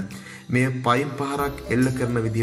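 A voice speaking over background music, starting again after a short pause about half a second in.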